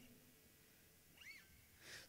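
Near silence between songs, with one faint short squeak that rises and falls in pitch a little past a second in.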